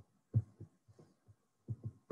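Faint, irregular low thumps, about six in two seconds, the strongest about a third of a second in and two more close together near the end.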